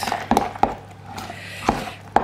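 A metal spoon stirring a thick quark-and-cheese mixture in a plastic measuring jug, knocking and scraping against the jug's sides in a few sharp taps, with a quieter stretch in the middle.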